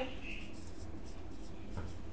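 Marker pen writing on a whiteboard: faint short scratching strokes over a low steady background hum.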